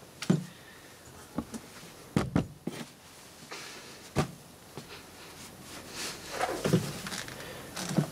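Handling noises from wiping an inkjet printhead with a towel: soft rustling of terry cloth with scattered light knocks and clicks of the plastic printer carriage being moved.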